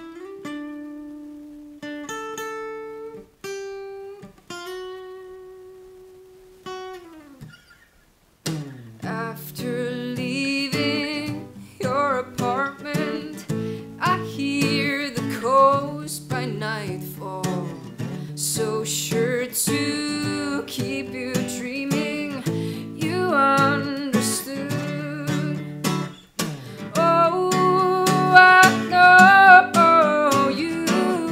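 Acoustic guitar played as single picked notes that ring and fade for the first several seconds, a brief pause, then full strummed chords with a woman singing over them.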